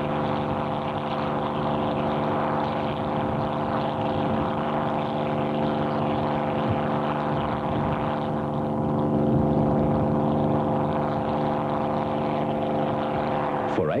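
The Packard Merlin V-12 engine of CAC Mustang A68-1 running steadily on the ground as a drone of even pitch, its propeller turning.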